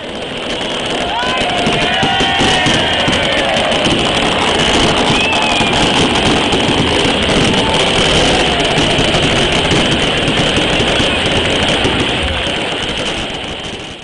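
Crowd applauding and cheering, with a few voices shouting over the clapping in the first few seconds.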